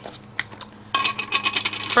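A hard plastic ink pad case being handled and its lid pulled off: a single click, then about a second of clicking and scraping plastic with a faint ringing tone.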